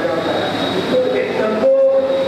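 A man giving a talk in Hindi into a microphone, amplified over a PA system. A steady high electronic whine sits underneath the voice.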